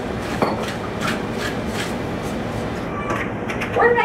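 A steady hiss with a few light clicks and taps of kitchen utensils being handled at the stove. A voice starts speaking right at the end.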